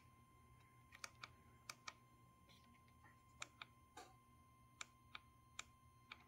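Faint, short clicks of the motorcycle's handlebar menu-switch buttons being pressed about a dozen times at irregular intervals, some in quick pairs, as the dashboard menu is scrolled.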